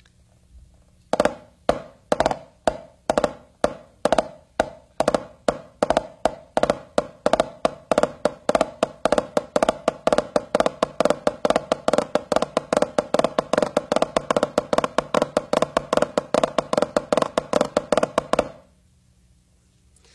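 Drum rudiment played with sticks on a drum: a 'fluff tap', a flam tap with each flam replaced by a flammed ruff. It starts slowly and speeds up into a dense run of ringing strokes, then stops near the end.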